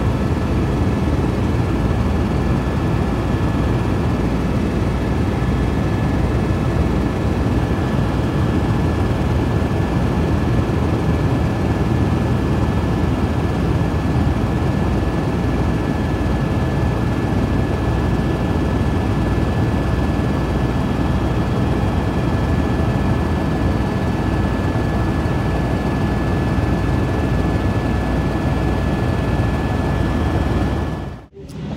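Steady drone of a helicopter in flight, heard from inside the cabin, with a thin steady high-pitched whine running through it.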